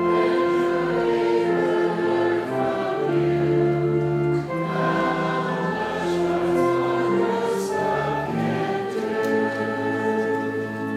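Slow church music in sustained chords, with choral singing.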